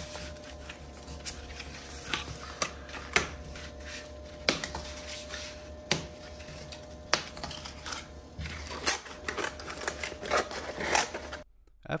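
Corrugated cardboard box being folded up by hand along laser-scored crease lines: irregular sharp creaks, clicks and rustles as the flaps bend, over a steady hum.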